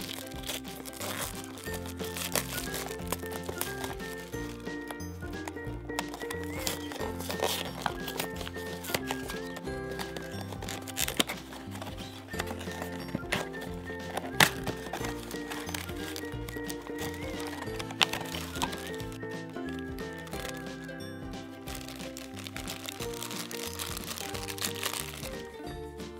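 Light background music, with the crinkling and tearing of a blind box's plastic shrink-wrap and packaging as hands open it, in many short sharp crackles over the tune.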